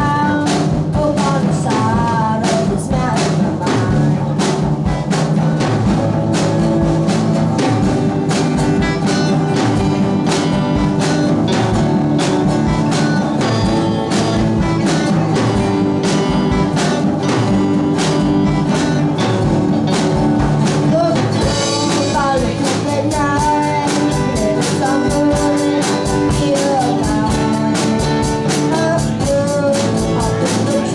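Live band playing a song: a drum kit keeps a steady beat under strummed acoustic guitar. A voice sings at the very start and again from about two-thirds of the way in.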